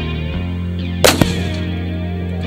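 A single rifle shot, one sharp crack about a second in, heard over rock music with electric guitar.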